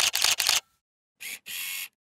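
Single-lens reflex camera shutter firing in a rapid burst, about ten shots a second, stopping about half a second in. After a pause comes a short click and then a longer single shutter-and-mirror sound near the end.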